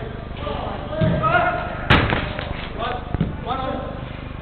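One sharp, loud smack of a football being struck about two seconds in, among players' shouts on an indoor court.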